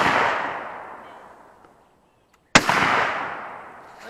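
Break-action shotgun shots outdoors: the echo of one blast trails off, then a second sharp blast comes about two and a half seconds in and rolls away in a long echo.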